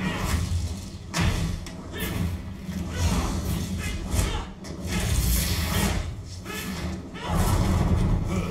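Film sound effects of fire blasts, whooshing bursts of flame with a heavy low rumble that swell in several surges, the last and loudest near the end, with a man grunting under score music.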